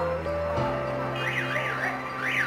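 Background music of sustained chords that change about half a second in; from just over a second in, a high warbling tone sweeping rapidly up and down joins it.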